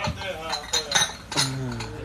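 Ceramic cup clinking against its saucer several times as it is lifted and set back down.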